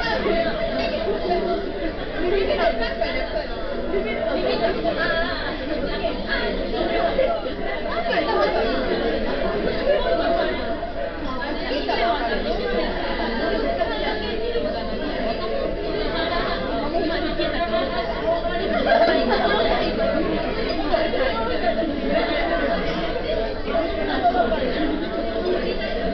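Background chatter of a busy restaurant dining room: many overlapping voices at once, none standing out, with a steady faint hum underneath.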